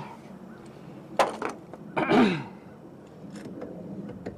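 A sharp click about a second in, then a short cough whose voice falls in pitch.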